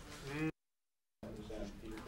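Short snatches of indistinct voice in the room. The first is cut off about half a second in by a dead-silent gap from an edit, and voices resume just past a second in.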